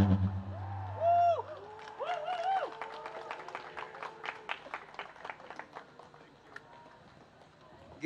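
The last held keyboard notes of a song fading out, then a few audience whoops and scattered clapping that dies away within a few seconds.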